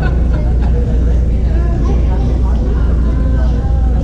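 Steady low rumble of a large gymnasium's room noise, with faint, indistinct voices of players echoing in the hall.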